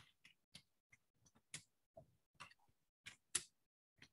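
Faint, irregular clicking of computer keyboard keys being typed on.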